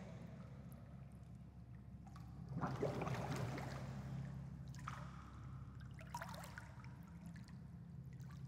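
Faint water sloshing and splashing from a swimmer's arm strokes in a pool, in swells, the strongest a few seconds in, over a steady low hum.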